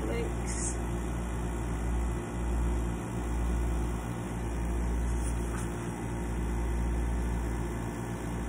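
A steady low hum, like a motor or appliance running, that dips briefly a few times.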